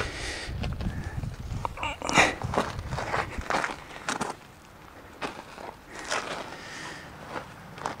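Footsteps crunching irregularly on loose gravel, with a quieter stretch a little past the middle.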